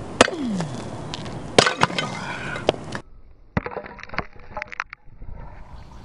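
A steel Crovel crowbar-shovel slamming into a concrete cinder block, with several sharp impacts and the block cracking and breaking. About halfway the sound changes suddenly to a few quieter knocks.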